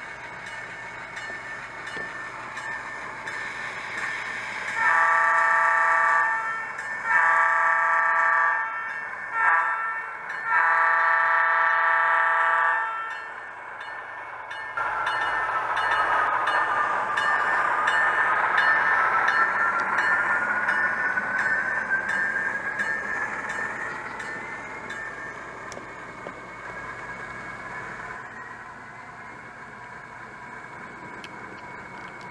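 An HO scale diesel switcher's horn sounding from its onboard sound decoder and speaker: two long blasts, a short one and a long one, the grade-crossing signal. Then the locomotive's engine sound runs up, with a whine that dips and then rises steadily in pitch as the train moves off.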